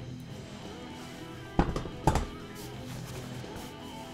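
Two sharp knocks about half a second apart, a second and a half in, as a chrome drum stool's metal tripod base is set down, over steady background music.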